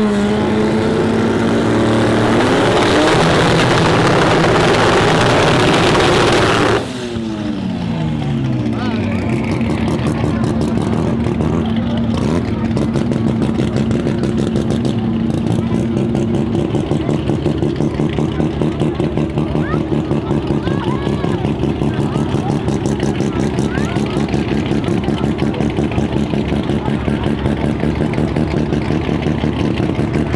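Drag car engine held at high revs at the starting line, cutting back abruptly about seven seconds in, the revs falling away to a choppy, pulsing idle. Near the end it begins to rev up again.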